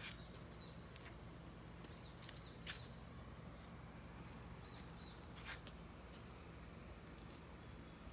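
Faint outdoor background of steady, high-pitched insect chirring, with a few brief high chirps. A few light clicks sound as well, the sharpest nearly three seconds in.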